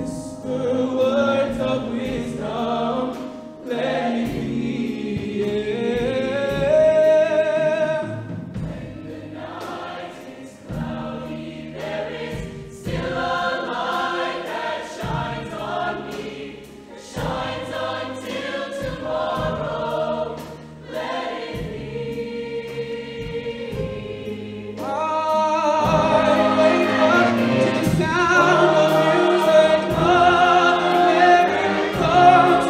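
High school show choir singing with a live backing band. The music drops to a softer passage about eight seconds in and swells back up near the end.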